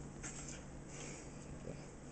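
Quiet room tone with a faint steady low hum and a few soft handling sounds near the start.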